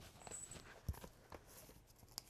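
Faint handling noise of a paper magazine being lifted and shown, with a few soft knocks and taps, the clearest about a second in.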